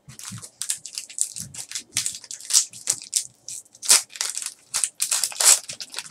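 Foil trading-card pack crinkling and being torn open, a dense run of sharp crackles.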